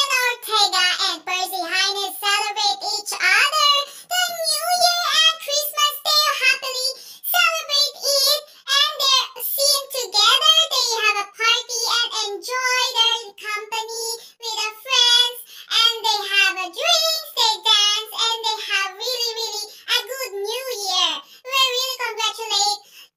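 A high-pitched voice singing a wavering melody throughout, with no accompaniment or beat beneath it.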